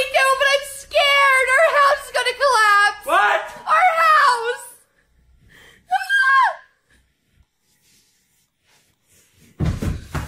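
A high singing voice heard on its own, with no backing instruments: the separated vocal track of a song playing from a phone. It sings phrases with vibrato for about five seconds, adds one short phrase around six seconds, then falls silent. A low thud comes just before the end.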